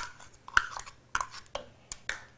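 A metal spoon tapping and scraping against a plastic measuring cup and mixing bowl as minced celery is knocked out: a handful of light, irregularly spaced clicks and knocks.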